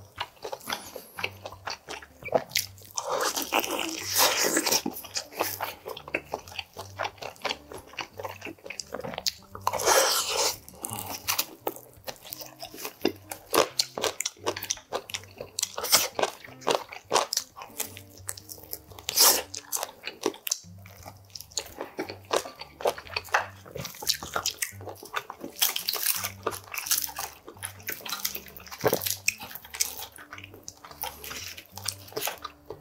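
Close-miked eating of oven-roasted chicken wings: repeated bites and crunches of the roasted skin with chewing in between, and longer noisy stretches about four and ten seconds in.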